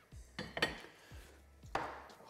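A plate and a spray-oil can being set down on a kitchen bench: a few knocks and clinks about half a second in and again near the end.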